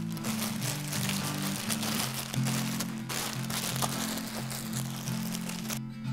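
Background music with slow held chords, over a steady rustle and crinkle of thin plastic bags being handled and packed.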